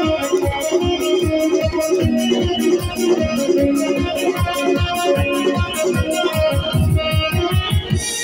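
Live folk band playing an instrumental passage: an electronic keyboard holds a melody over fast hand-drum strokes from a dhol, and the drumming grows busier near the end.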